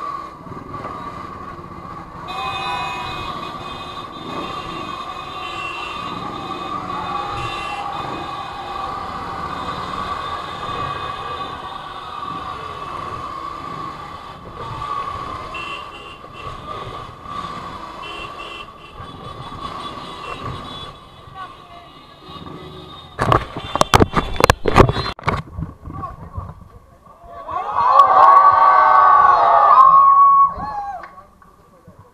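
Motorcycle riding through city traffic, with a steady high-pitched tone throughout. A cluster of loud knocks comes about three-quarters of the way through, then a crowd shouting loudly near the end.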